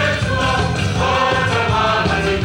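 A large mixed youth choir of women and men singing a Samoan Christmas song together in harmony.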